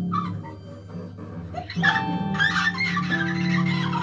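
Free improvised music from an electric harp, voice and double bass trio: a steady low drone, joined about two seconds in by a louder, bright, noisy texture with held tones over it.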